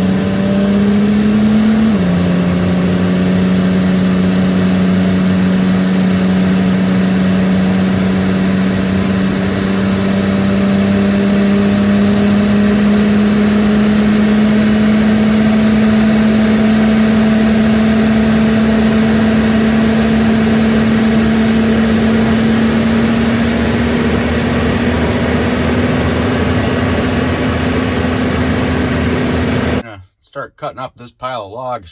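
Square-body pickup truck's engine heard from inside the cab while driving on the road. About two seconds in, the engine note drops as the three-speed automatic shifts up, then climbs slowly as the truck gathers speed, along with road and tire noise.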